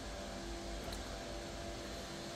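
Cooling fans of an AMD EPYC 9654 mining computer running steadily under full CPU load: a constant whir with a faint low hum.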